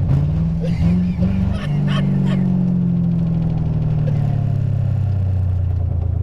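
The stretch limo's 1997 Lincoln Town Car V8 engine revving hard, heard from inside the cabin; its pitch jumps up about one and a half seconds in and then sags slowly while held at high revs.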